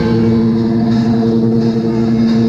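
Live progressive rock band playing, with a held keyboard chord running steadily under the rest of the band.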